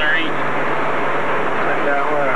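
Indistinct voices of people talking, heard over a steady rushing noise.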